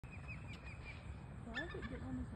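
Osprey calling: a quick, evenly spaced series of about six short, high whistled chirps in the first second, over wind rumble on the microphone. Near the end a louder, wavering voice comes in.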